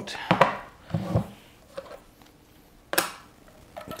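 Handling clatter of batteries and the telescope mount's plastic parts: a few sharp knocks about half a second in, lighter taps after, and one sharp click about three seconds in.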